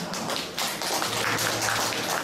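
A small audience clapping: many quick, uneven hand claps overlapping.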